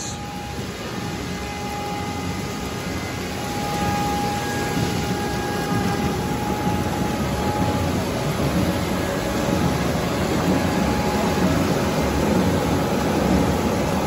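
Paper slitting and spooling machine with a rotary die cutter running steadily, rollers turning as narrow paper strips wind onto spools. It makes a continuous mechanical drone with a faint thin whine that fades out about eight seconds in.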